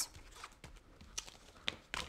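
Duct tape being pressed and smoothed down by hand onto a duct-tape strap on a cutting mat: faint rubbing with a few light, scattered ticks and taps.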